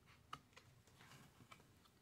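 Near silence with a few faint clicks from a thick cardboard board-book page being turned by hand.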